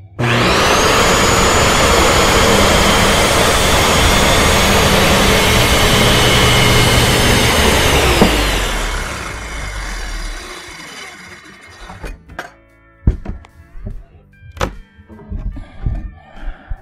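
Skil corded circular saw starting up and crosscutting a one-by-twelve board, its high whine steady for about eight seconds, then falling in pitch as the blade spins down after the cut. A few knocks follow as the cut board is handled.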